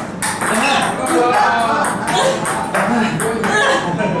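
Table tennis rally: a celluloid ping-pong ball clicking repeatedly off the rackets and the table.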